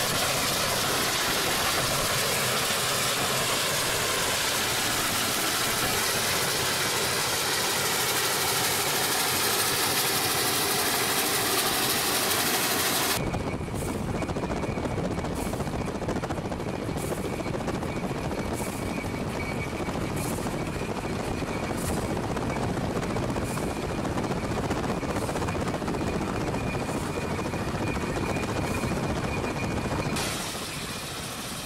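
Steady freeway road and wind noise from a moving car running alongside the Santa Fe 3751, a 4-8-4 steam locomotive. About halfway through the sound changes suddenly to a lower rumble with faint ticks about every second and a half.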